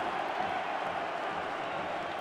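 Football stadium crowd cheering and applauding a home goal, heard as a steady wash of many voices with no single sound standing out.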